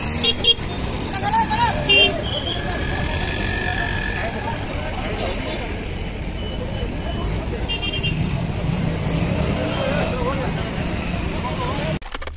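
Busy street traffic with vehicles running and several short horn toots, under a steady background of voices talking.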